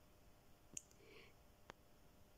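Near silence with two faint light clicks, about a second apart, and a faint soft trickle between them, as a small milk carton is tipped to pour milk into a glass bowl of melted butter.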